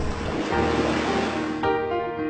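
Sea waves washing, a steady rush of water noise, mixed with background music whose sustained chords swell back in near the end.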